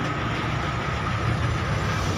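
Steady engine rumble and road noise of a bus, heard inside its passenger cabin.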